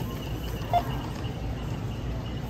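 Self-checkout barcode scanner giving a single short beep about a second in as an item scans, over a steady hum of store background noise.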